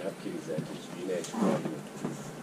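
Speech: a man talking, loudest about one and a half seconds in.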